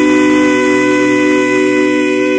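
A cappella vocal group, male and female voices in close harmony, holding a long sustained chord at the end of a gospel song.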